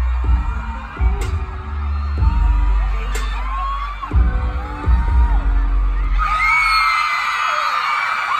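Loud music with heavy, deep bass notes played over an arena sound system, with a crowd of fans screaming over it. The screaming swells about six seconds in.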